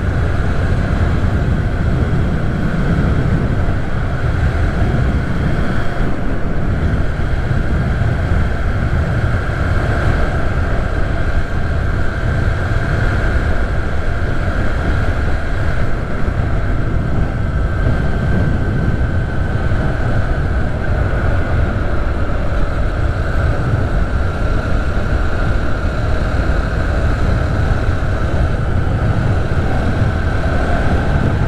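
Motorcycle cruising at a steady speed of about 65 km/h, its engine running evenly under a dense rumble of wind buffeting the helmet-level camera microphone, with a faint steady whine above.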